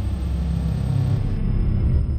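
Deep, steady low rumble of a closing logo sound effect.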